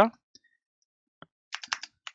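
Computer keyboard keystrokes: two faint lone clicks, then a quick run of about five keystrokes near the end.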